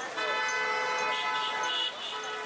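A vehicle horn gives one long, steady blast of nearly two seconds that starts and stops abruptly.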